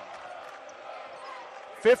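A basketball being dribbled on a hardwood court under steady background arena noise. A man's commentary voice comes in near the end.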